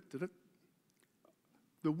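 A man's speech pausing between phrases: a short drawn-out syllable, a gap of about a second and a half with only a few faint clicks, then speech resuming near the end.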